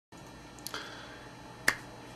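Two short, sharp clicks, a faint one and then a much louder one about a second later, over a steady faint hiss.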